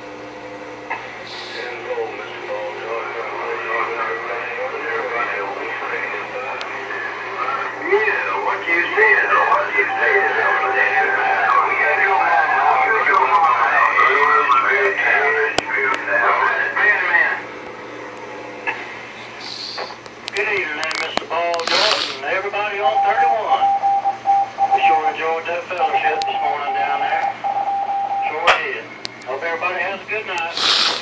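Voices coming in over a Galaxy Saturn CB base radio's speaker, thin and hard to make out, with a steady whistling tone over them at two points. A few sharp crackles come about two-thirds of the way through.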